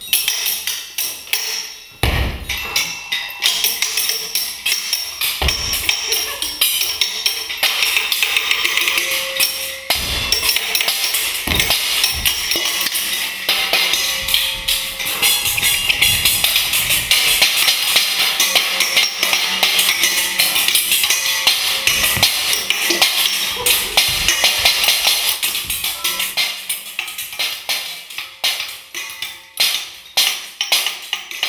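Pots, pans and spoons struck as percussion instruments: a dense, continuous clatter and jingle of metal, quieter in the first couple of seconds and thinning out near the end.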